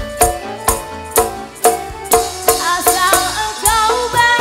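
Live Javanese dangdut koplo band: hand drums strike about twice a second over keyboard chords, and a woman starts singing a little past halfway.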